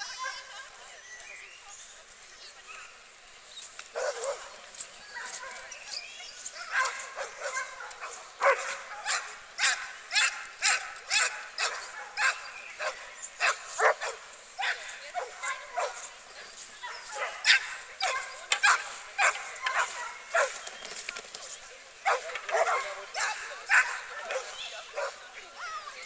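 Dog barking over and over, short sharp barks at about two a second, starting about four seconds in and coming thickest from about eight seconds on.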